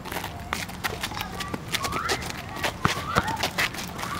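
Sneakers scuffing and knocking on an asphalt court as players move around, a string of short, sharp impacts, with a few brief rising calls from the players.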